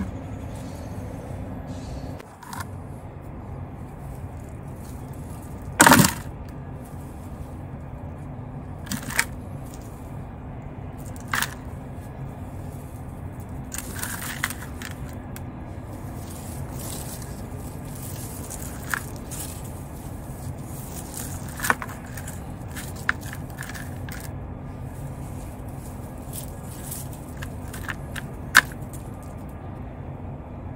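Hands scooping garden soil into a plastic bucket among dry corn stalks: scattered sharp cracks and scrapes of stalks and soil, the loudest about six seconds in, over a steady low hum.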